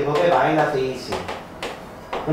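A man talking briefly, then chalk striking and scraping on a chalkboard in a few sharp clicks as he writes.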